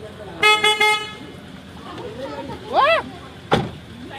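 A car horn beeps three times in quick succession about half a second in. A voice calls out near the end, followed by a sharp knock.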